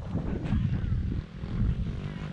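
Wind buffeting the camera microphone outdoors: an uneven, fluttering low rumble.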